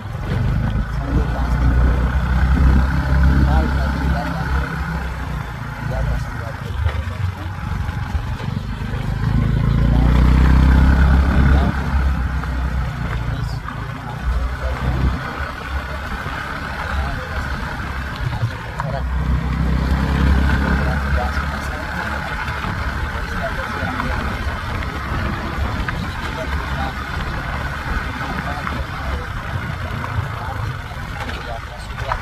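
Motorbike riding along a road, its engine and road noise running steadily, with wind buffeting the phone's microphone in loud low swells a few times.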